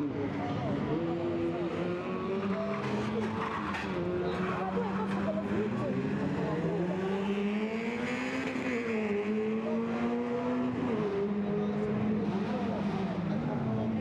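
Peugeot 106 rally car's engine revving up and down again and again as it weaves through tight turns, with tyres squealing briefly about halfway through.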